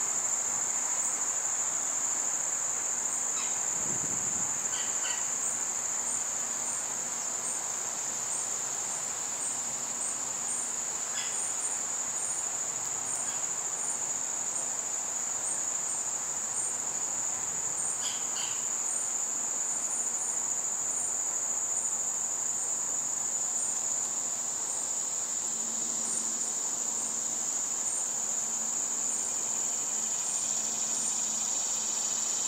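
Crickets trilling steadily in a continuous high-pitched chorus, with a few brief high chirps cutting through it now and then.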